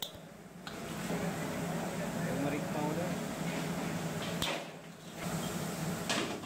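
Steady kitchen hiss over a low hum, with faint voices in the background. The sound drops out briefly right at the start and again about four and a half seconds in.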